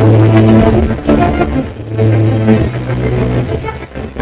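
Programme theme music: a loud, deep bass line of sustained notes that change about once a second, with higher tones over it.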